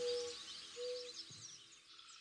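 Birds chirping in a nature-sound bed as the song's last music fades out, with two short held notes in the first second or so.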